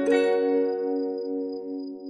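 Clean-toned electric guitar: a chord is picked just after the start and left to ring, fading slowly.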